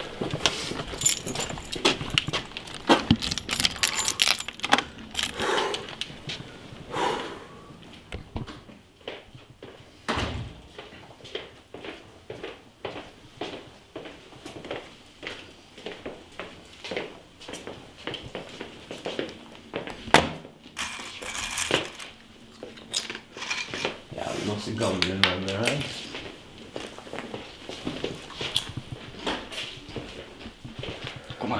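A bunch of keys jangling and rattling, as at a door being let into, with many scattered clicks and knocks of handling and movement. Low voices come and go, most clearly near the end.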